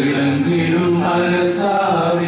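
A group of Catholic clergy, mostly men's voices, singing a hymn together in unison from printed sheets. The tune moves slowly, each note held for about half a second before stepping to the next.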